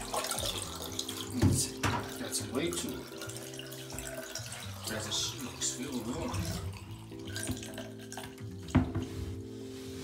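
Tap water running in a stream into a blue plastic water-filter housing as it is rinsed out in a bathtub, with a few sharp knocks of the housing against the tub. Background music with held chords plays throughout.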